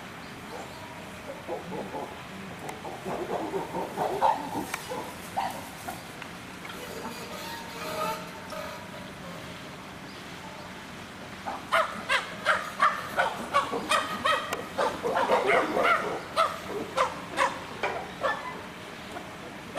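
Chimpanzees calling: a few softer calls early on, then from about twelve seconds in a loud, rapid series of short calls, about two a second.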